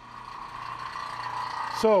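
Vacuum pump running steadily, growing louder over the two seconds as it pumps down a vacuum chuck that still leaks somewhere.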